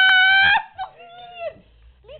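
A person's loud, high-pitched held "aah" scream that cuts off about half a second in, followed by fainter, wavering whiny vocal sounds.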